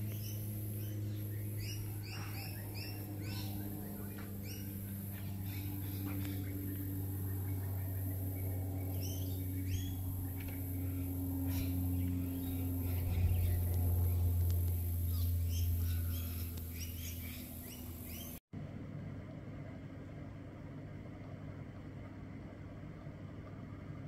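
Outdoor ambience of small birds chirping in short, repeated calls over a steady low hum, which swells about halfway through and then fades. The sound cuts off abruptly about three quarters of the way in, leaving only a fainter steady hum.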